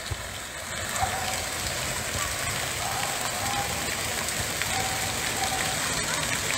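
A loud fountain splashing: jets of water falling into its basin in a steady rush.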